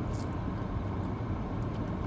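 A car's steady low rumble heard from inside the cabin, with a couple of faint ticks.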